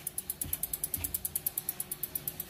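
Shimano rear freehub on a mountain bike clicking as the rear wheel spins freely: the pawls ratchet in a rapid, even run of about a dozen ticks a second.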